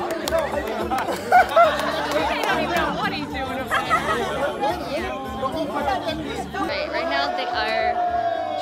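Crowd of guests chattering and calling out over one another, with background music underneath.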